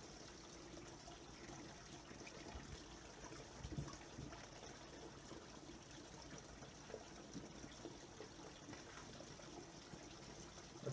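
Faint, steady trickle of spring water as a plastic water bottle is held under and filled by hand, with a few soft knocks about three to four seconds in.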